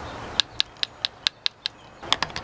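A quick run of short, sharp clicks, about five a second, starting shortly after a faint hiss at the start.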